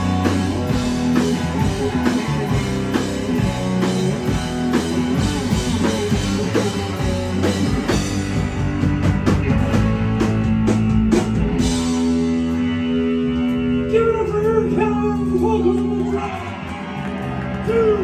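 Live rock band playing: bass guitar, electric guitar and drum kit with shouted vocals. About twelve seconds in the drums stop and held, bending guitar notes ring on as the song winds down.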